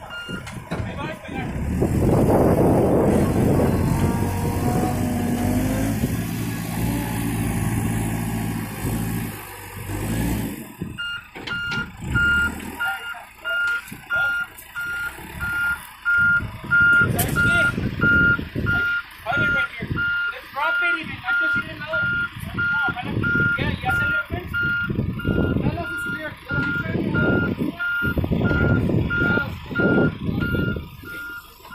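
Volvo backhoe loader's diesel engine running loud for about ten seconds, then from about eleven seconds in its reversing alarm beeps steadily and evenly over the engine, which surges up and down.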